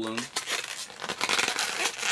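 Latex modelling balloons being handled and rubbed against each other and the hands: a dense run of rubbery scrapes that grows louder in the second half.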